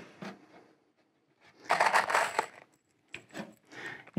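Exterior deck screws rattling in a plastic box as a few are picked out, a short jingling burst followed by a few small clicks.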